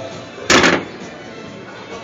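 Nissan Versa's hood latch releasing from the inside lever, one sharp thunk about half a second in.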